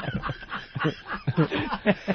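Men chuckling and snickering in short bursts.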